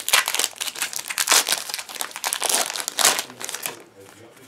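Foil Pokémon card booster pack wrapper crinkling and crackling as it is torn open by hand, a dense run of crackles that eases off near the end.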